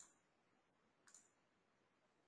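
Near silence, with one faint mouse click about a second in.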